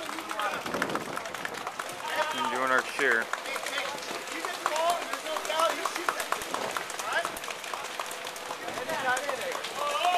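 Indistinct chatter and calls from a group of voices, with scattered short, sharp clicks throughout.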